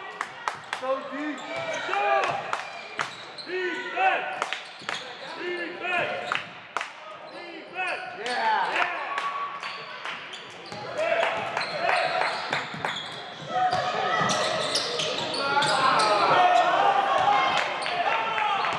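Basketball bouncing on a hardwood gym floor, sharp repeated knocks, amid players and spectators calling out. The voices grow louder and busier about eleven seconds in.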